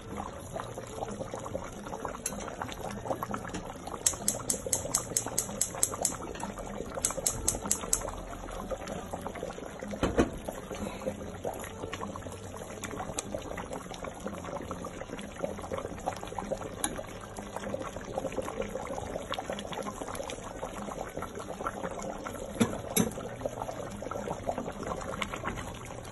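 A meat stew bubbling at a steady boil in a steel pot on a gas stove, with liquid sloshing as broth is ladled out and the meat is stirred. A quick run of sharp ticks comes about four to eight seconds in, and a single knock about ten seconds in.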